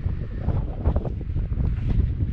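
Strong wind buffeting the camera's microphone: a loud, uneven low rumble that rises and falls with the gusts.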